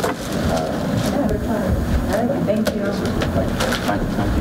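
Indistinct chatter of several people talking among themselves at once, with a few light clicks and knocks.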